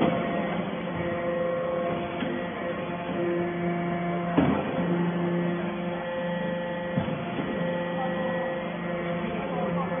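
Hydraulic metal-chip briquetting press running: a steady machine hum with several held tones that come and go. Two sharp knocks, about four and a half and seven seconds in.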